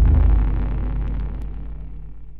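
Deep low rumble of a cinematic intro sound effect, decaying steadily after an impact hit, with a few faint ticks about a second in.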